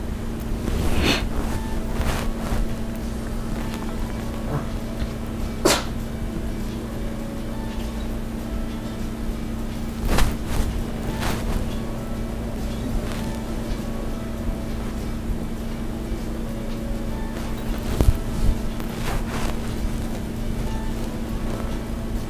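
A steady low hum runs throughout, with a few short, sharp clicks and light rustles as glass seed beads, needle and thread are handled during peyote stitching.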